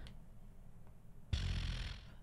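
A person's heavy exhale close to a microphone: a short breathy rush starting about a second in and lasting under a second, after near-quiet room tone.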